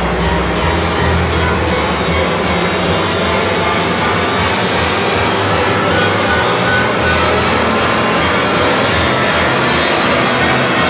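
Orchestra and rock band playing a long crescendo: many instruments sliding upward in pitch together into a dense, swelling mass of sound, over a steady beat of drum hits.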